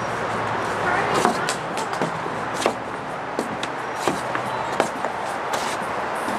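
Outdoor background noise with faint, distant voices and scattered light knocks and clicks.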